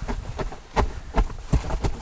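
Repeated low thumps, about three a second, of people bouncing on a bed made of cardboard boxes under a foam mat.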